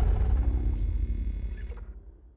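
The tail of a logo sting's sound design fading out: a deep rumble with a low hum dying away, the highs cutting off sharply near the end.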